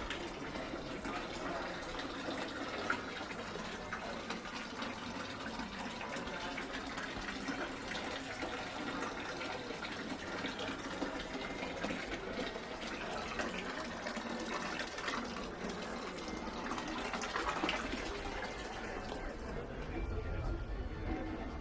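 A thin stream of spring water running from a metal spout into a water-filled stone basin, a steady splashing trickle.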